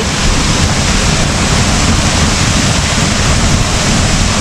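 Waterfall close at hand: a loud, steady rush of falling water and spray.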